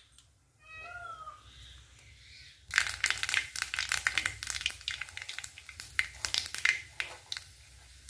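Mustard seeds spluttering in hot oil: a dense run of sharp crackling pops that starts about three seconds in and thins out near the end.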